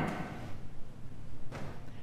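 A pause in speech: steady low room hum in a large hall, with the echo of a voice dying away at the start and a faint soft knock about one and a half seconds in.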